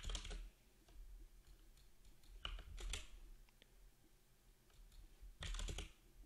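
Computer keyboard keystrokes in three short bursts: at the start, a little before halfway, and near the end.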